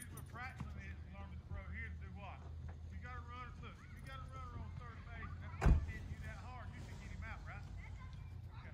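Faint voices of people calling and talking across an open ball field over a steady low rumble, with one sharp knock a little past halfway through.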